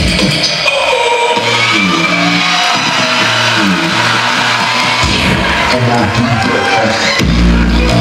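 Loud electronic dance music with a bass line stepping between notes; a heavier, deeper bass comes in about seven seconds in.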